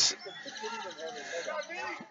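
Faint, drawn-out calls and shouts from players on a lacrosse field during play.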